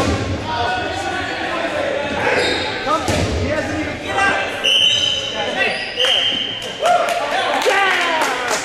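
Players shouting and talking over each other in an echoing gymnasium during a dodgeball game, with dodgeballs thumping on the wooden floor. Two short, steady, high-pitched squeaks sound about five and six seconds in.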